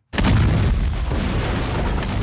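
A large explosion in a film's soundtrack: a sudden deep blast breaks in just after the start and carries on as a loud rolling rumble.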